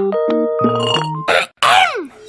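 Cartoon score of short plinked keyboard notes, broken about a second in by a brief noisy swish and then a quick sound effect that falls steeply in pitch near the end.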